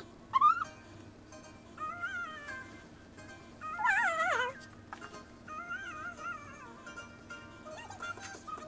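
A high-pitched, whiny voice humming or crooning short tuneful phrases, with a louder falling, wavering whine about four seconds in.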